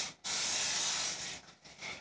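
Aerosol cooking-spray can spraying a baking sheet: a short spurt, then one steady hiss lasting about a second.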